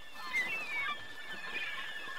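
Faint gull calls: several short gliding cries over a soft, quiet background.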